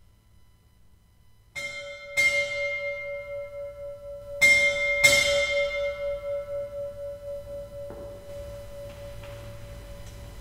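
A bell struck four times, in two pairs a little over half a second apart. Its main tone rings on long after the strikes with a slow waver before dying away.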